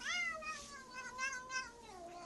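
Domestic cat giving one long drawn-out meow that rises sharply at the start and then slowly falls in pitch, with shorter wavering notes over its middle.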